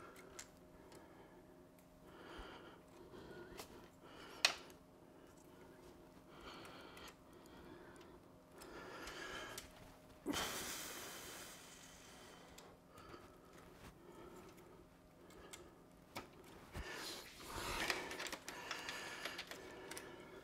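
Quiet handling of computer cables being routed and plugged into hard drives inside a PC case: faint rustles and small clicks, with a sharper click about four seconds in and a louder rustle lasting about a second near the middle, over a faint steady hum.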